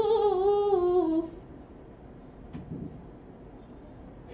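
A teenage girl reciting the Quran in the melodic tilawah style: one long held note with a quick ornamental waver, stepping down in pitch and ending about a second in. Then a quiet pause, with a soft knock a little past the middle.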